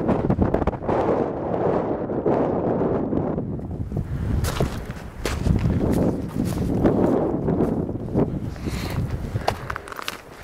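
Wind buffeting the microphone in gusts, with footsteps on snow audible from about halfway through.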